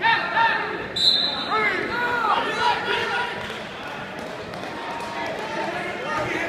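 Wrestling shoes squeaking on the mat in a cluster of short squeaks about two seconds in, as the wrestlers scramble, with voices of coaches and spectators in the gym.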